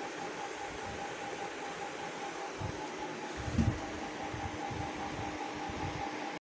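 Steady mechanical whir of a running appliance with a faint hum, and a soft low thump about three and a half seconds in.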